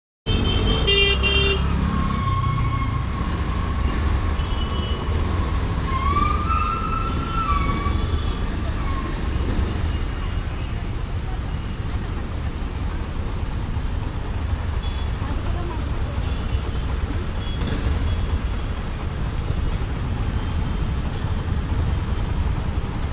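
Congested city traffic heard from a motorcycle: a steady low rumble of engines. A short burst of horn honks comes about a second in, followed by a long, wavering horn tone held for several seconds.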